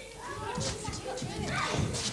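A group of children's voices shouting and calling out over one another, as in a playground game, with music underneath.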